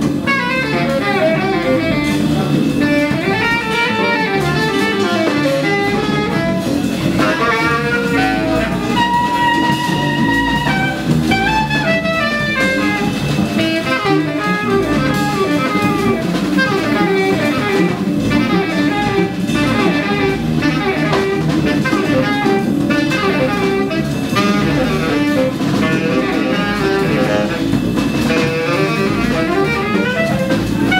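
Live jazz combo playing: saxophone soloing over drum kit with ride cymbal and plucked upright bass, the saxophone holding one long note about nine seconds in.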